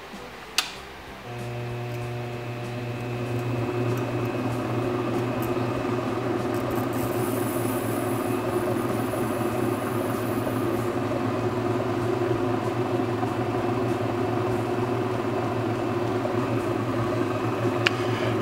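Ultra Tec faceting machine's lap motor starts about a second in and runs with a steady hum while a preformed aquamarine is ground against the spinning cutting lap. A faint high hiss comes in for a few seconds midway.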